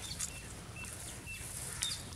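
A few faint, short bird chirps over a steady low outdoor background noise, with a couple of light clicks.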